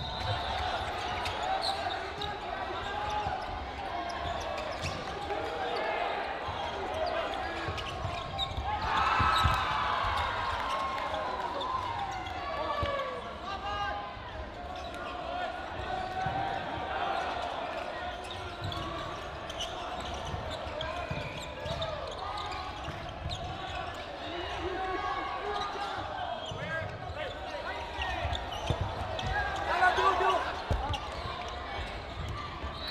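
Players' calls and shouts carrying across a large sports hall, with repeated thuds of cloth dodgeballs and feet on the wooden court.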